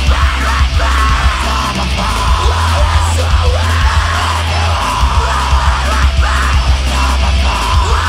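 A post-hardcore band playing live and loud: drums, bass and electric guitar, with vocals over them.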